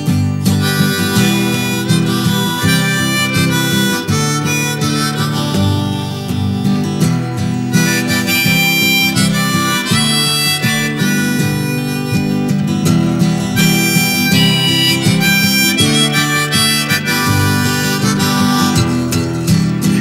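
Diatonic harmonica in G, played in first position in a folk style, sounding a melody of single notes and double stops over acoustic guitar.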